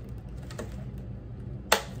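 A blue LEGO baseplate being bent by hand with a Technic brick pressed onto its studs, in a bend test of how well the brick holds. The plastic rustles quietly, then gives one sharp click near the end.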